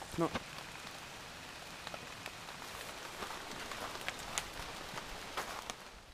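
Steady rain falling, an even hiss with scattered louder single drops.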